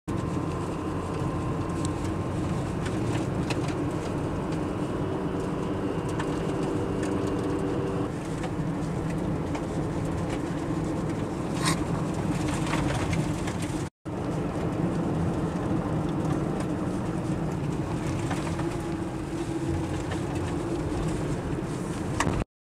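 Car engine and tyre noise heard from inside a moving car: a steady low rumble with a few drifting engine tones, cut off for a moment about two-thirds of the way through.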